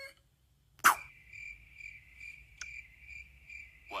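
Cricket chirping, a high chirp repeating about three times a second, starting about a second in right after a loud, sharp, short burst; another short burst comes near the end.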